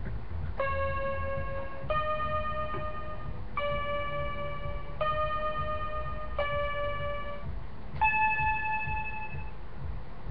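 Small toy electronic keyboard playing six single notes one after another, each held about a second with short gaps between, the last note clearly higher than the rest.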